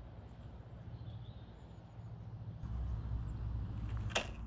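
Quiet outdoor background: a low steady rumble that gets louder about two and a half seconds in, with a few faint bird chirps.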